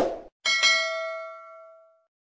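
Subscribe-button sound effect: a quick burst of clicks at the start, then a single bright bell ding about half a second in that rings out and fades over about a second and a half.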